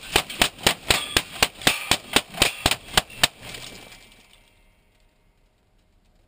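A rapid string of rifle shots, about four a second, fired into a car's windshield and heard from inside the cabin. The firing stops a little over three seconds in, and the echo fades away over the next second or so.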